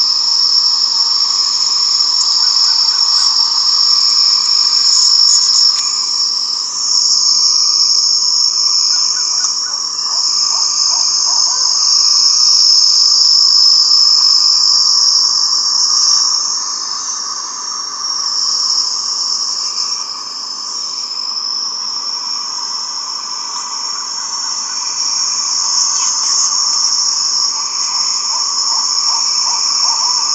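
Steady, high-pitched chorus of insects droning without a break, swelling and easing and dipping for a few seconds past the middle. A lower steady hum and a few short trills of rapid chirps sound beneath it.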